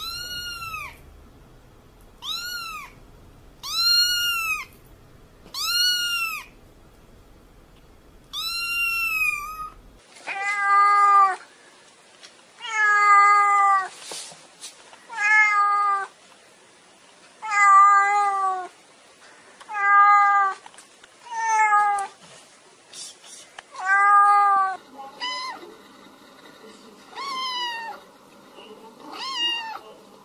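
Cats meowing over and over, about one meow every two seconds. It starts with a high-pitched meow, and about ten seconds in it changes abruptly to a lower-pitched, louder meowing at the same pace, which turns fainter near the end.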